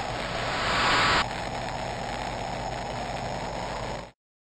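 A steady rushing noise that swells over the first second. Its hiss then cuts off abruptly, leaving a duller, lower rush.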